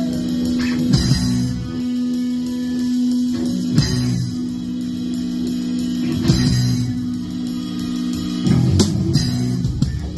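Live rock band playing an instrumental passage: electric guitars and bass hold a steady low droning note while the drums strike accented hits with cymbal crashes about every two and a half seconds.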